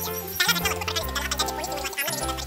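Background music with held bass notes and quick percussive hits.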